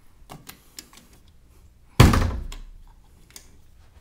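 A few light clicks, then a single loud thump about two seconds in that rings out briefly: a closet door being swung open and knocking against its stop.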